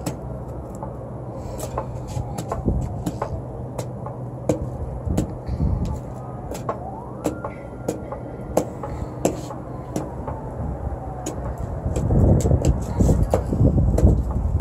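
Charcoal in a barbecue grill crackling and popping as air is blown into it, throwing sparks. A whine rises about seven seconds in, holds, then falls away, and a loud gusty rumble of blowing air builds near the end.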